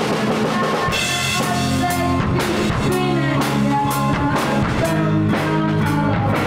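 Rock band playing together: an electric guitar and a bass guitar over a drum kit keeping a steady beat.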